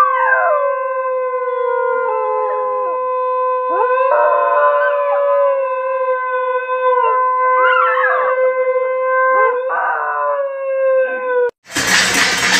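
A conch shell blown in one long held note while a dog howls along several times, its howls sliding up and down over the note. Both stop suddenly just before the end, replaced by music.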